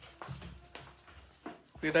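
Faint scattered soft knocks and rustles, then a woman's voice near the end.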